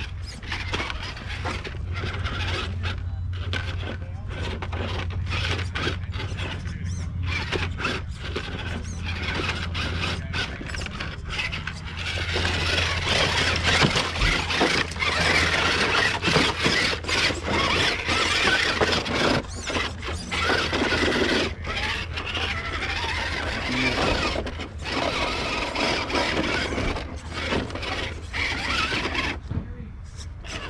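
Scale RC rock crawler's electric motor and geared drivetrain whining as it crawls over rocks, with scraping along the way; louder from about halfway through.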